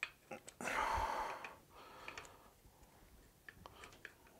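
Faint, scattered clicks of a ratchet and ball-hex bit being handled against a just-loosened bolt on a motorcycle engine, with a soft rushing noise about half a second in that lasts about a second.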